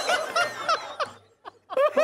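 A person laughing in short repeated bursts, breaking off for about half a second in the middle before laughing again.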